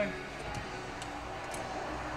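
Quiet workshop room noise with a low steady hum, and two faint light clicks about a second and a second and a half in.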